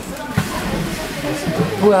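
People talking in a small enclosed space, with a man's voice starting to speak near the end.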